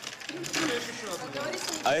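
Voices talking, with a man's voice starting up near the end.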